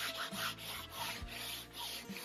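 A rag rubbing dark oil glaze into a painted canvas in quick back-and-forth strokes, about four a second.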